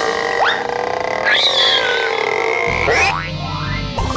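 Cartoon soundtrack music with comic sound effects: two quick upward pitch sweeps, about half a second in and near three seconds, a warbling effect between them, and a low rumble coming in near the end.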